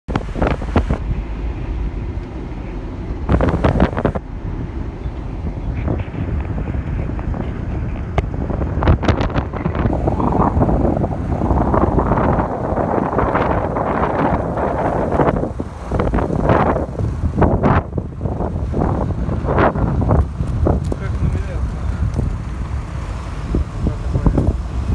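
Wind buffeting the microphone of a moving car, in uneven gusts over the car's steady low road and engine rumble.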